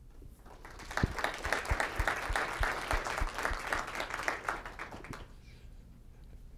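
Audience applauding, building up about half a second in and dying away after about five seconds, with a few single claps standing out.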